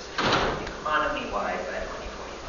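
A short, loud noise about a quarter second in, followed by a voice speaking in a room.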